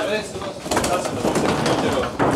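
A wheeled flight case rolled across a truck trailer's floor: a rumbling rattle of casters with many small knocks, starting a little under a second in.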